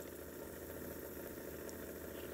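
Magnetic stir plate running with a faint, steady hum as it spins its stir bar in the solution.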